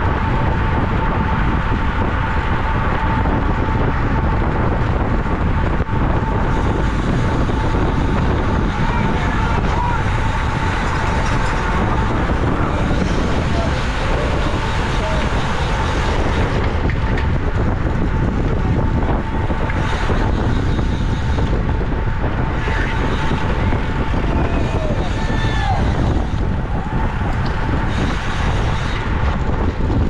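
Wind rushing over the microphone of a bicycle-mounted action camera at race speed, mixed with tyre and road noise from the pack of racing bicycles. A steady high hum runs underneath.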